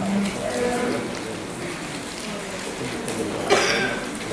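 A woman's voice speaking over the hall's sound system, with a short cough-like burst about three and a half seconds in.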